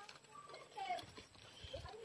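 Faint, short animal calls, a few brief chirps, with a brief low rumble near the end.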